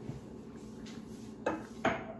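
Metal spoon clinking twice against a ceramic bowl near the end, over a steady low hum.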